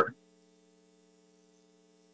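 A faint steady electrical hum, a few low tones held without change, after a voice cuts off at the very start.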